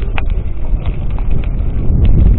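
Wind buffeting the camera microphone of a moving mountain bike, with clattering and knocks from the bike rolling over a rough dirt track.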